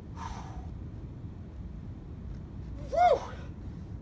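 A man's hard exhale of effort shortly after the start, then a loud short voiced grunt about three seconds in, rising then falling in pitch, as he strains through the last pulses of an exercise. A steady low rumble runs underneath.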